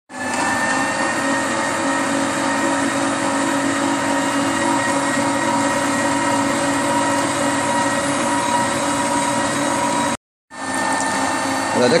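Slow-rotation masticating juicer's electric motor running steadily as it presses vegetables and fruit: an even hum with several fixed tones. It starts abruptly, drops out for a moment about ten seconds in, then resumes.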